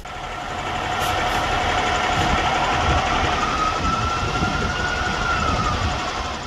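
Emergency vehicle siren sounding over a heavy engine rumble. It grows louder during the first second, holds a long steady tone, and its pitch slowly rises and then falls away near the end.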